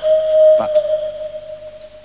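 A single steady whistle-like note from the soundtrack, starting suddenly and fading away over about two seconds.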